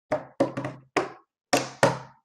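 Knocking on a hard surface: about six sharp knocks in an uneven rhythm, each ringing briefly before it fades.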